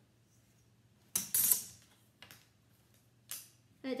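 Felt-tip marker scratching across cardboard as a line is drawn: a loud scratchy stroke about a second in, then two shorter, fainter strokes.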